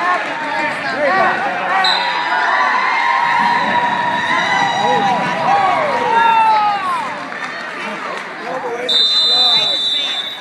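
Spectators shouting and cheering on wrestlers in a gymnasium, many voices overlapping, some calls drawn out. A high steady tone sounds near the end.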